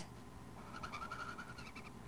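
Marker squeaking faintly as it is drawn along paper, a thin squeak starting about half a second in and lasting just over a second.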